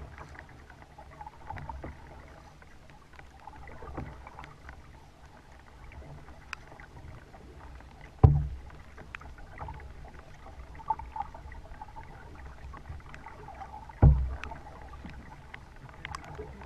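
Kayak being paddled: a steady low rumble of water on the plastic hull with small drips and ticks. Two loud sudden thumps, about halfway through and again near the end.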